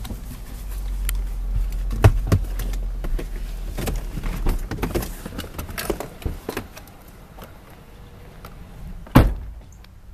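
Clicks and handling noise as a pickup truck's door is opened and someone climbs out, then the door is shut with one loud thunk about nine seconds in.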